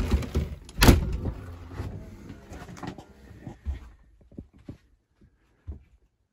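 A motorhome's entry door being pulled shut: a knock at the start and a louder bang a second in as it latches, followed by lighter knocks and clicks that die away after a few seconds.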